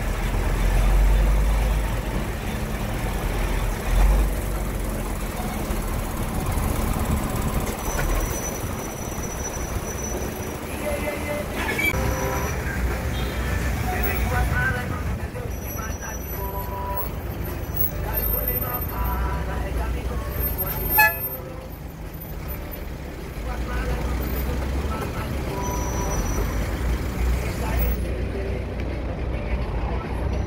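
Vehicle engines in slow stop-and-go traffic, with a steady low rumble from the vehicle the sound is picked up in, strongest in the first few seconds and again near the end. One brief loud sound stands out about two-thirds of the way through.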